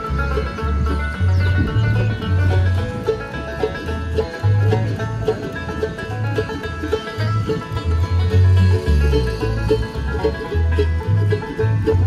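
Acoustic bluegrass band playing together: banjo, fiddle, mandolin and guitars over a walking line of low bass notes.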